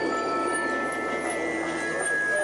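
Eerie ambient soundtrack of a haunted attraction: a dense wash of sound with several long held tones and a brief high rising-then-falling tone near the start.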